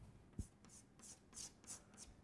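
Faint chalk strokes on a chalkboard: a handful of short scratches as a table cell is shaded with diagonal hatching lines, with one soft tap just before them.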